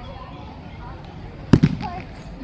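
A single sharp crack about one and a half seconds in, followed straight away by a quick rattle of smaller knocks, over faint background voices.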